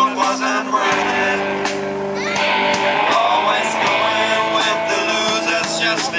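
Live rock band playing amplified: electric guitar, electric bass and drum kit.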